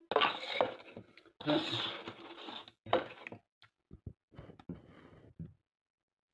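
Plastic supplement bottles handled and set down on a countertop: a rattling, rustling stretch in the first half, then a run of small separate clicks and knocks.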